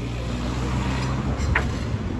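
A car engine running close by, a low steady hum that fades out about a second and a half in, where a short sharp sound comes at the loudest moment.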